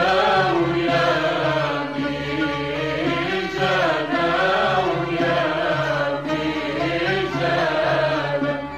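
Singing over musical accompaniment: a melody of long, wavering held notes.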